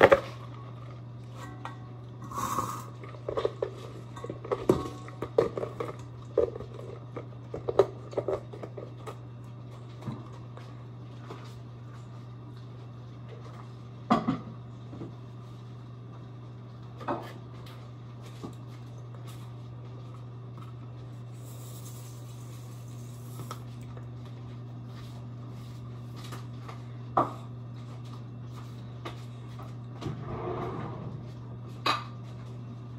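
Dishes and bowls being handled on a kitchen counter: scattered knocks and clinks, busiest in the first ten seconds, over a steady low hum.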